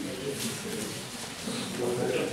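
Low cooing bird calls, twice, with faint voices in the room.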